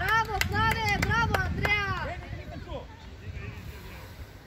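High-pitched voices shouting a quick run of calls, about four a second for roughly two seconds, then fading out. A couple of sharp knocks cut through the shouting.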